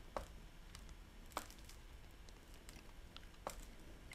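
A few faint, scattered clicks of a computer mouse against quiet room tone, the clearest about a second and a half in.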